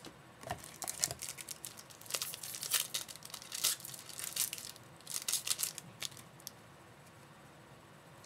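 A foil trading-card pack wrapper being torn open and crinkled by hand, in quick bursts of crackling that stop about six and a half seconds in.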